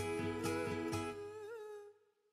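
Closing bars of a pop song from a music video: a wavering hummed vocal line over sustained guitar chords and a beat of about four strikes a second. The beat stops about a second in, and the music fades out just before the end.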